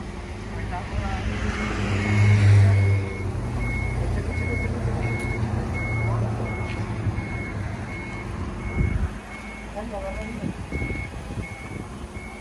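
Toyota forklift's reversing alarm beeping steadily at one pitch, about twice a second, over its running engine. The engine gets louder for a moment about two seconds in.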